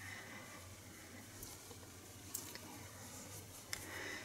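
Faint rustle of acrylic yarn being worked with a crochet hook, with a few soft ticks.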